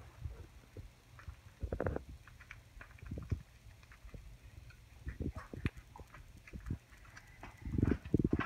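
Kitchen handling sounds while preparing a pizza: irregular light taps, clicks and rustles of hands, a spoon and paper on the counter, with louder rubbing bursts about two seconds in and near the end. A low steady hum runs underneath.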